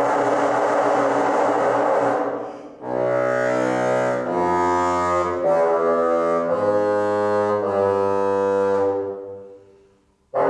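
Solo bassoon playing unaccompanied. A loud opening phrase fades out about two seconds in, then a slow line of held low notes steps from pitch to pitch every second or so and dies away near the end.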